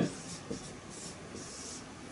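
Marker pen writing on a board in faint, short strokes, with a light tick about half a second in.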